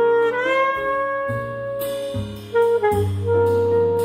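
Jazz quartet playing a slow ballad: saxophone leads with a long held note that bends up just after the start, then a few shorter notes in the middle. Piano chords, upright bass notes and ride cymbal strokes play underneath.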